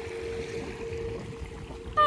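A Harpsicle harp string ringing on one steady note that dies away a little after a second in, over the low rumble of wind on the microphone.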